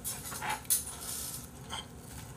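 Tableware being handled at a dining table: short rustling noises and one sharp clink about three-quarters of a second in.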